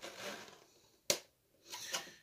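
Hands handling hard plastic RC parts: a short rustle, then one sharp click about a second in.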